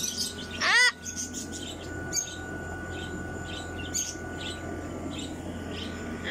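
Backyard birds chirping, with many short high chirps throughout and one loud, short, arching bird call a little under a second in.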